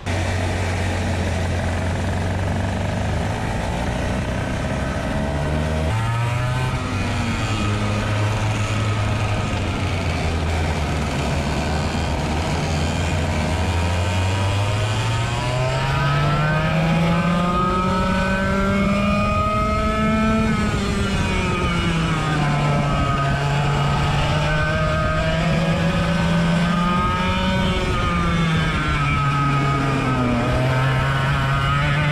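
Onboard sound of a 100cc two-stroke kart engine. It runs at low, steady revs for the first half, then revs climb steadily to a peak about two-thirds of the way in, drop, and rise and fall again as the kart accelerates and eases off on track.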